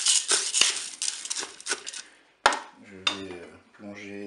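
A wooden spatula stirring dry uncooked coquillettes with chicken pieces and mushrooms in a Cookeo multicooker's bowl: rattling and scraping for about two seconds, then it stops. A sharp click follows about halfway through.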